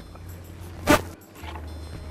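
Low, steady background music drone with one loud, short hit about a second in.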